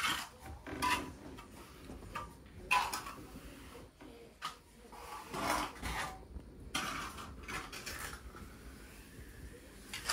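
A small steel trowel scraping and swishing through wet self-levelling floor compound in a few irregular strokes.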